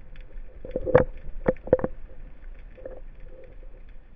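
Underwater sound through a camera mounted on a speargun: a steady low water rumble with a few sharp clicks and knocks bunched between about one and two seconds in, the loudest about a second in.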